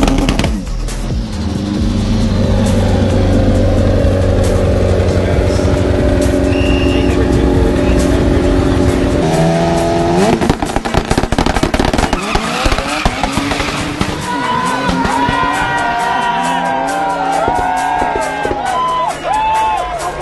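Drag-race car's engine held at high revs with tyres squealing through a burnout. About nine seconds in the revs rise sharply as it launches, and the pitch then climbs and drops repeatedly as it pulls away down the strip.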